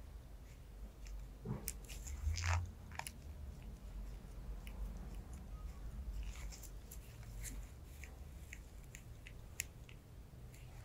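Mundial 722 stainless-steel cuticle nippers snipping cuticle skin around a little toenail: a string of small, irregular crisp snips, a few louder ones about two seconds in, over a low steady hum.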